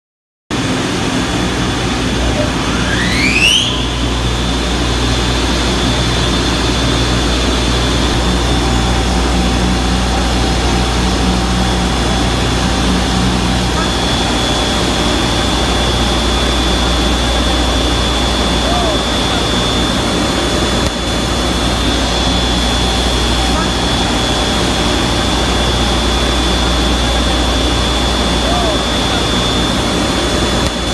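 Pump machinery running loudly and steadily, with a deep hum under a dense mechanical noise. A high whine rises in pitch about three seconds in and then holds steady to the end.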